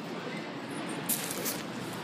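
Steady background noise inside a large store, with a brief rustle a little after a second in.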